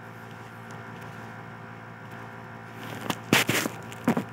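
A steady electrical hum, then a quick cluster of three or four sharp knocks about three seconds in.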